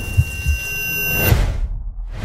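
Film trailer soundtrack: dense low rumble with a couple of thuds under steady high ringing tones, cutting off abruptly just over a second in and leaving only a low rumble.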